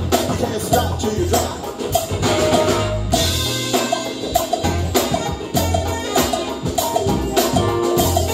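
Live band playing afro-fusion reggae and jazz: a drum kit keeps a steady beat over a repeating bass line, with keyboard, saxophone, guitar and hand drums.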